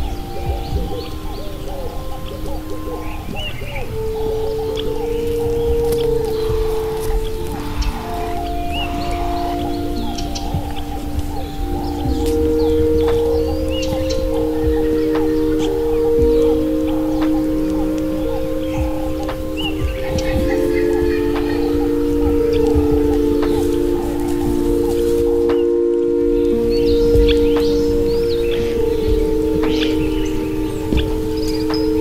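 Slow ambient meditation music: long, overlapping chime-like tones that shift slowly from one held note to the next, with short high chirps and a steady hiss beneath.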